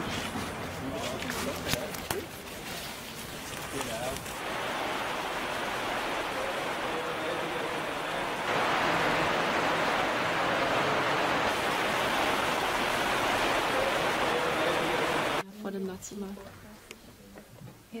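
Steady rush of water flowing along a channel, growing louder about halfway through and cutting off abruptly about three seconds before the end.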